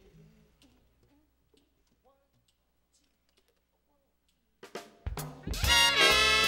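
Near silence for about four and a half seconds, then a jazz band comes in loudly about five seconds in, with drums, trumpet and saxophones starting a swinging tune.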